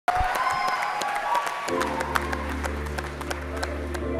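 Audience applause, many hands clapping, with a sustained keyboard chord coming in and holding steady under it about a second and a half in.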